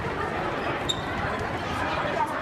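Indistinct chatter of several people in a gym hall, with a brief high squeak about a second in.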